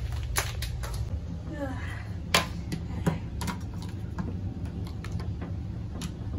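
Irregular light taps, the doll's hard boots being stepped across a tile floor, one sharper tap about two seconds in, over a steady low hum.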